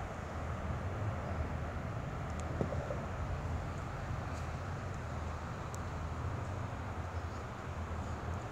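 Steady low rumble of outdoor background noise, with a couple of faint ticks.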